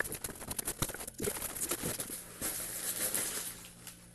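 Cardboard shipping box being torn open by hand: crackling and tearing of the tape and flaps, then scratchy rustling as the flaps are pulled back and plastic packaging is handled. The sound dies down near the end.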